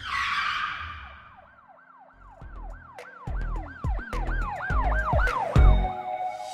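Logo intro sting: a whoosh, then a siren-like tone that swoops up and down about three times a second over deep bass hits, which build and are loudest near the end.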